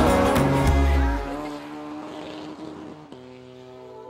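Car engine sound effect, a motor note rising a little in pitch, then fading out over about the first second. Soft music with held tones comes in about three seconds in.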